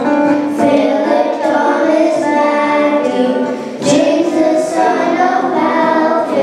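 A small group of children singing a Telugu Christian song together into handheld microphones, with a brief pause about four seconds in.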